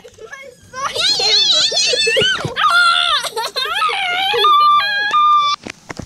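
A child shrieking and squealing without words: loud, high-pitched cries that waver up and down, ending in a few held squeals about five seconds in.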